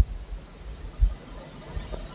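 Steady hiss with a few soft, very low thuds, one about a second in and a weaker one near the end.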